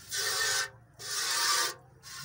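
Hand-milking a water buffalo into a steel bucket: two jets of milk hiss into the pail about a second apart, each lasting just over half a second.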